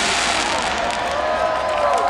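A large outdoor crowd cheering and applauding, with many voices whooping over steady clapping.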